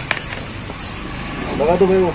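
Outdoor background noise with one short sharp knock just after the start. People's voices begin about one and a half seconds in.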